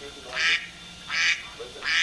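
Electronic alarm buzzer giving short, buzzy beeps at an even pace, about one every three quarters of a second, three times.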